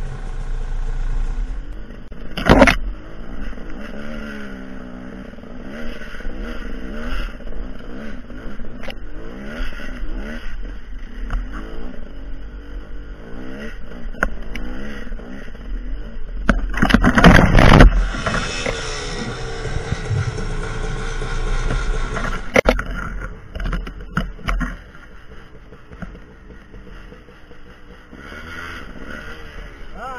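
Off-road dirt bike engine revving up and down as it labours over rocks and roots, with knocks and scrapes of the bike on the trail. A sharp knock comes about two and a half seconds in. Another loud burst comes about seventeen seconds in, followed by a few seconds of high revving, and the engine runs quieter near the end.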